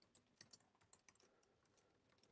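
Faint computer keyboard typing: an irregular run of soft key clicks.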